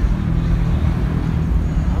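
Road traffic: a motor vehicle's engine gives a steady low rumble.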